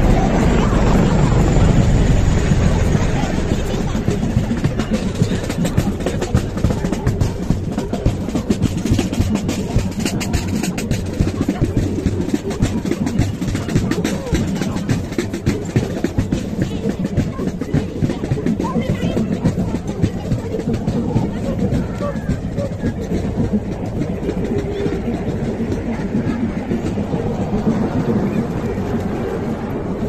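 A military marching band playing as troops march past, with the low rumble of a helicopter flying overhead strongest in the first few seconds.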